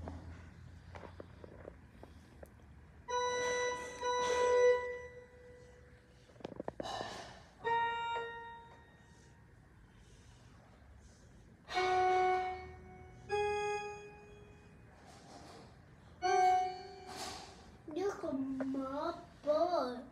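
Single notes played slowly one at a time on a small mini electronic keyboard: about six notes, each held for roughly a second, with pauses of one to three seconds between them. The later notes are lower in pitch.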